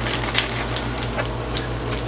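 Steady low hum of a 13,500 BTU built-in camper air conditioner running, with a few faint crinkles of a small plastic bag being handled to take out hook-and-loop fastener pieces.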